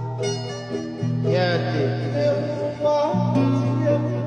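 Two acoustic guitars strummed together while a man sings a Tongan song over them, bending and holding his notes.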